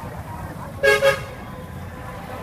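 A vehicle horn honks twice in quick succession, two short loud blasts about a second in, over steady street noise.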